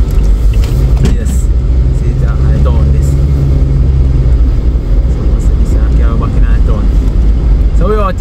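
Car driving on a road, heard from inside the cabin: a steady low engine and road drone.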